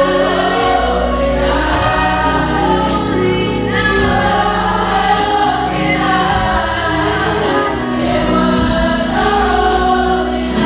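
Youth gospel choir singing, many voices together in several parts over sustained low notes.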